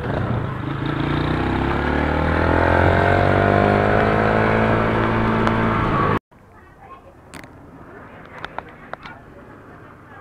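Motorcycle engine pulling under acceleration, its pitch rising steadily for a few seconds and then holding. It cuts off abruptly about six seconds in, leaving a much quieter background with a few short clicks.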